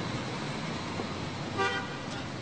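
Steady street traffic noise with a single short car horn toot about one and a half seconds in.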